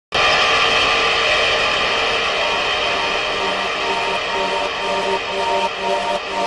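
Harsh noise electronic music opens abruptly with a dense, steady wall of noise. From about halfway, a repeating pulsing synth pattern comes in beneath it while the noise slowly thins.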